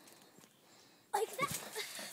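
Quiet at first, then about a second in a sudden burst of movement noise and a single dull thud as feet come down onto a trampoline's mat at the end of a handstand.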